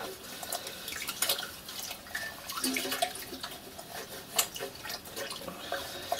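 Water sloshing and splashing in a washing-up bowl as a soft-soldered brass tank is scrubbed and turned by hand with a cloth, washing off the soldering flux. The splashes and drips come irregularly, with a sharper splash about four and a half seconds in.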